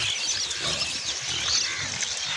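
Domestic pigs grunting as they root through rubbish, with many short, high bird chirps over them throughout.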